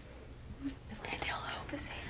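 Faint, quiet voice, whispered or murmured, over a low steady rumble in a pause between spoken lines.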